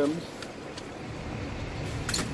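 Steady background noise with a low rumble that grows stronger in the second half, and a couple of faint clicks.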